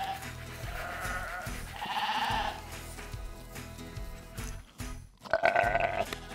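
Sheep bleating several times, the loudest bleat near the end, over background music.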